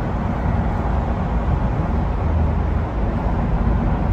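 Steady low rumble of road and engine noise heard from inside a car's cabin while it drives through a road tunnel.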